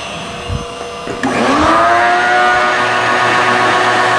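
Shop vacuum switched on about a second in: its motor whine rises as it spins up, then holds steady as it draws chips away from the end mill. Before it starts, the CNC mini mill runs more quietly with a steady tone.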